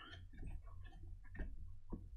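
Faint scattered clicks and ticks, with two sharper clicks near the end, over a low steady hum.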